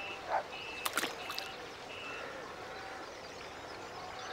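A string of short, high-pitched animal calls, one every half second or so, that stop about two seconds in, over a faint background hiss, with a couple of sharp clicks about a second in.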